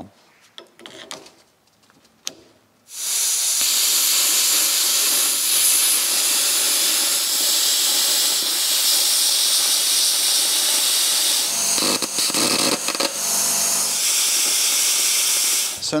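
Budget plasma cutter cutting through steel plate: a loud, steady hiss that starts suddenly about three seconds in and stops just before the end.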